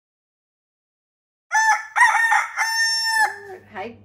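A rooster crowing once, a cock-a-doodle-doo in three parts ending on a longer held note, breaking in suddenly after dead silence.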